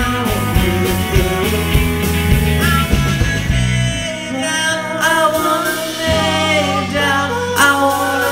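Indie rock band playing live: electric guitars, bass guitar and drums with a sung vocal. About halfway through the beat thins out, leaving held bass notes and guitar under the singing.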